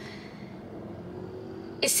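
Steady, quiet hum of a car cabin with a faint thin tone in it, until a woman's voice comes in near the end.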